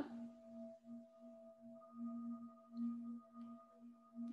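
Faint meditative background music: a sustained drone of a few steady held pitches, gently swelling and fading.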